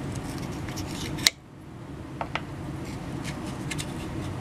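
AA cells clicking against one another and against the wooden boards of a vise-held battery feeder as cells are drawn from the bottom and the stack drops down. One sharp click comes about a second in, two lighter ones a moment later and several more near the end.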